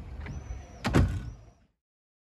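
A street door swinging shut, with a double thud as it hits the frame and the latch catches about a second in, over a thin high whine.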